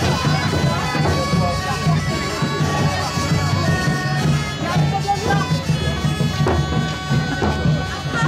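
Bagpipes playing a tune over a steady drone, with crowd chatter underneath.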